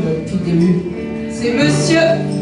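Live rock band playing: electric guitars and bass guitar over drums, loud and steady.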